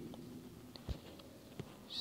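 Quiet room tone with two faint, short low thumps, about a second in and again half a second later.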